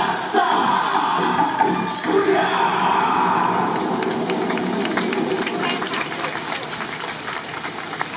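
Loud dance music with voices ends about three seconds in, and scattered audience clapping follows as the level falls away.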